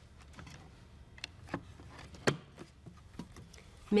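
Light clicks and taps of hands handling the plastic case of a Lifepak CR Plus defibrillator and its electrode packet as the packet is seated and the lid closed. A handful of short clicks, the sharpest a little over two seconds in.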